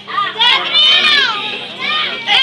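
Children's voices, loud and high-pitched, overlapping in excited chatter and calls. One long call falls in pitch in the middle.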